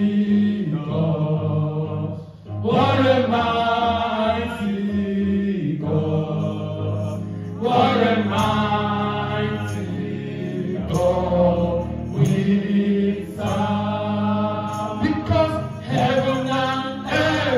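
Two women singing a gospel worship song live through microphones, in long held phrases with brief breaks between them, over a steady low accompaniment.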